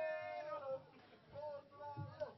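A person's high-pitched, drawn-out wailing voice, held and then falling in pitch, followed by a couple of shorter high calls, in a meow-like way.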